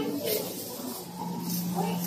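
Indistinct background voices with a brief hiss about a quarter second in, joined about halfway by a low steady hum.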